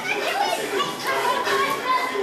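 Children's voices calling and chattering over one another as they run and dance around a hall, with some adult voices among them.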